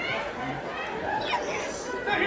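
Indistinct speech and chatter from several voices.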